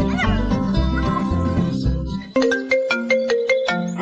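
Background music with a steady bass beat, with a short meow sound effect just after the start. A little over two seconds in, the music stops and a mobile phone ringtone begins, a quick run of plucked notes.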